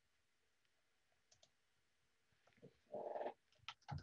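Near silence, then about three seconds in a brief louder sound followed by a quick run of light clicks near the end.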